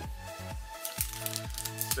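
Background music: a steady beat of about two strokes a second under held notes.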